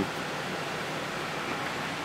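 Steady, even hiss of background room noise with a faint low hum underneath and no distinct events.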